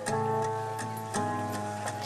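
Live keyboard and acoustic guitar accompaniment with no singing: sustained chords, a new chord sounding about a second in, over a steady ticking beat.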